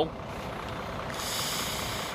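Steady rumble of idling buses and trucks, with a high hiss of escaping air starting about halfway through.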